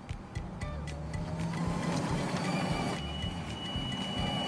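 Background music with the whir of a golf cart's motor as it drives up, and a thin steady high tone entering about halfway through.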